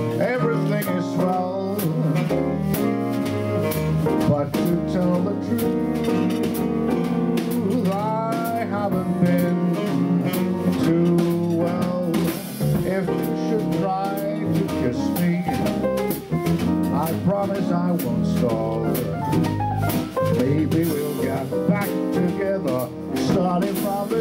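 Live swing jazz: a tenor saxophone playing a melodic line with bends and glides, over piano, bass and drums keeping a steady cymbal beat.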